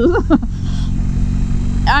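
Harley-Davidson V-twin motorcycle engine running at a steady cruise, heard with wind and road noise on the rider's microphone; a woman's speech trails off in the first half second.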